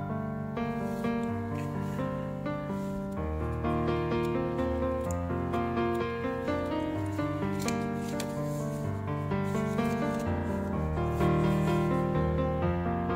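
Background instrumental music: sustained melodic notes with a steady, gently changing chord pattern.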